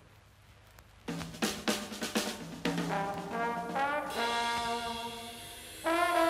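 Jazzy blues band intro of trumpets and trombones with a drum kit, starting about a second in after a brief hush. The horns rise in a glide about halfway through and come in louder near the end.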